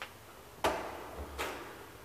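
Two sharp mechanical clicks from an old elevator, about three-quarters of a second apart, with a faint low hum around the second one.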